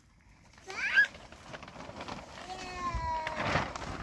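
A cat meowing twice: a short call rising in pitch about a second in, then a longer call falling in pitch near the end.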